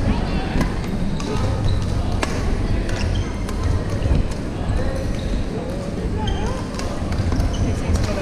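Badminton in a large sports hall: sharp racket hits on the shuttlecock and short squeaks of court shoes on the wooden floor, over the steady rumble and indistinct chatter of other games.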